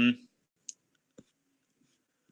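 Two short clicks of a computer pointer button about half a second apart, opening a link.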